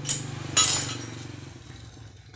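A brief clink right at the start, then a louder clinking rattle about half a second in, over a steady low hum.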